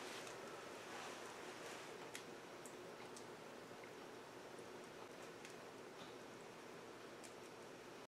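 Near silence: quiet room tone with a few faint, irregular crackles from a wood fire burning in a small wood stove.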